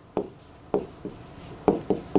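Pen tip tapping and scratching on the glass of an interactive touchscreen whiteboard while handwriting, heard as a few short sharp clicks, a couple of them close together near the end.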